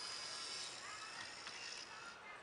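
Jensen VM9115 car DVD receiver's motorized 7-inch screen mechanism whirring faintly as the screen motors out of the unit and tilts upright. The motor sound stops shortly before the end.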